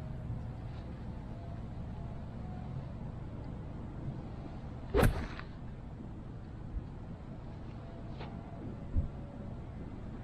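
An eight iron striking an RZN HS Tour golf ball off the fairway: a single sharp, solid crack about halfway through.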